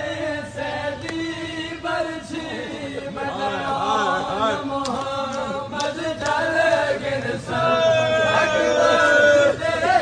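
A crowd of men chanting a noha, a Shia mourning lament, together in a sung chant, with a few sharp slaps from chest-beating (matam). The chant grows louder in the last few seconds.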